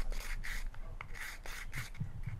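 A run of short, scratchy rubbing noises in quick succession.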